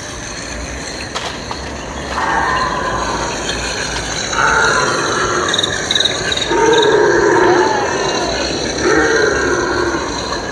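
Recorded dinosaur roars and growls played from an outdoor loudspeaker beside the path: four drawn-out calls, the first about two seconds in and the last near the end.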